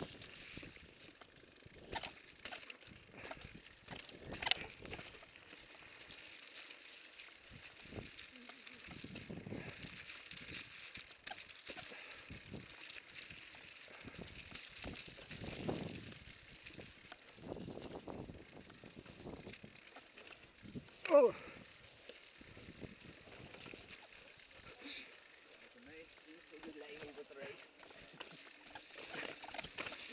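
Mountain bike ridden over a rough dirt trail: uneven tyre rumble with scattered knocks and rattles from the bike. A rider gives a short "oh" about 21 seconds in.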